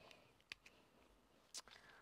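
Near silence: quiet room tone with two faint, brief clicks, one about half a second in and one about a second and a half in, from a spiral-bound notepad being moved on the desk.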